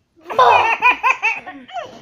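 A young child laughing out loud: a run of about five quick, high-pitched pulses starting a little way in, trailing off toward the end.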